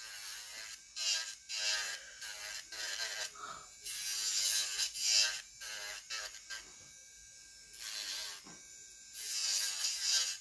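Electric nail drill with a fine sanding band running on slow speed, scuffing the surface of a natural nail in short repeated passes: a scratchy sanding noise that comes and goes with each pass.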